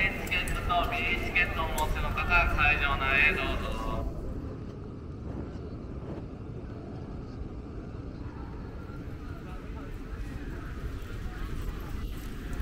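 Busy city street ambience: voices of passersby are loud for the first few seconds and stop abruptly, leaving a steady low rumble of traffic and crowd noise.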